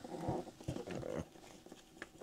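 Faint handling noise as the webbing carry strap is unhooked from the top of a plastic battery case: a few soft clicks and rustles in the first second or so, then nearly quiet.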